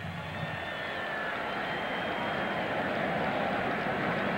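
Stadium crowd noise heard through a TV sports broadcast: a steady, even wash of many voices with no single event standing out.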